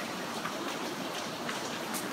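Steady background room noise in a large hall: an even hiss with no distinct events.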